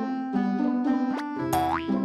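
Light, comic background music, with a short rising cartoon 'boing'-style sound effect about one and a half seconds in.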